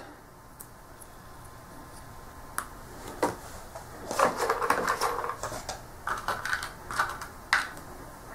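Small cardboard wargame counters clicking and rustling as they are handled and set down on the mounted map board. A run of light, irregular taps starts about three seconds in, after a near-quiet start.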